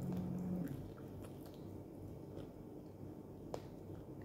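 A person chewing fresh dates, with faint mouth clicks and one sharper click about three and a half seconds in. A steady low hum stops under a second in.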